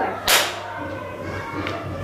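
A single sharp whip-like swish about a third of a second in, sweeping downward and then fading.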